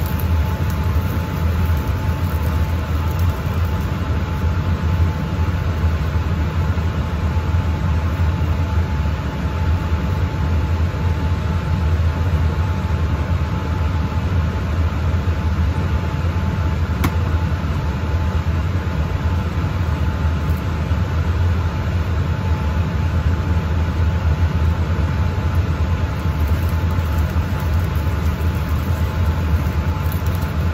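Steady drone of a laminar flow hood's blower running continuously, a low hum with a faint steady whine above it.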